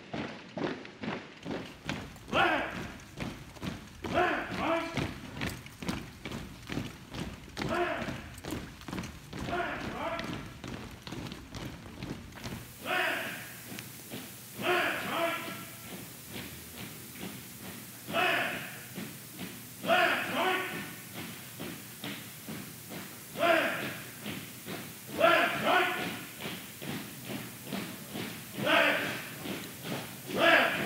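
A file of police recruits marching in step on a hard floor, their footfalls thudding in a steady rhythm, while a voice shouts short calls about every two seconds.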